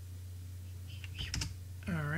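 A few computer keyboard keystrokes about a second in, over a steady low electrical hum.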